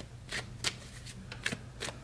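Deck of tarot cards being shuffled by hand, an overhand shuffle, with a handful of short card clicks as packets drop onto the deck.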